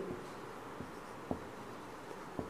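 Felt-tip marker writing on a whiteboard: faint strokes with a couple of small taps of the tip.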